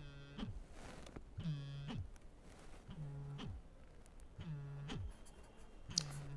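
A man's voice making short, drawn-out hesitation sounds ('aah'), each about half a second long, about one every second and a half, five in all, while he writes.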